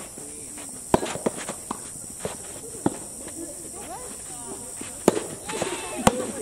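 Soft tennis rally: a rubber ball struck by rackets, with three loud sharp strikes about two seconds apart and fainter knocks of bounces and far-court hits between them.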